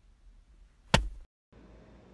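A single sharp knock about a second in, over faint room noise; the sound drops out completely for a moment shortly after.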